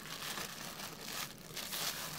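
Clear plastic wrapping crinkling and rustling against a cardboard box as hands lift a wrapped speaker out of it.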